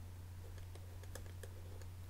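Faint, light clicks and taps, several a second, of a stylus on a pen tablet as digits are handwritten, over a steady low electrical hum.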